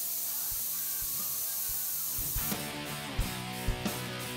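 Airbrush spraying paint with a steady hiss that cuts off about two and a half seconds in. Background guitar music with a regular beat plays underneath and comes forward once the spray stops.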